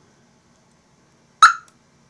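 Aftermarket car alarm siren giving one short chirp about one and a half seconds in, the confirmation that the system has just armed from the key fob.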